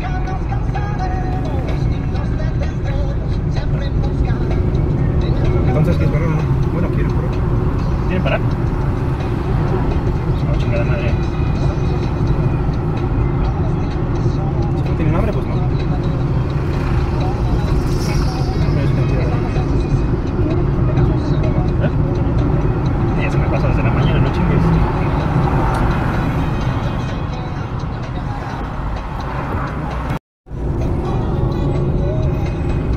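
Car engine and road noise while driving, heard from inside the cabin as a steady low rumble.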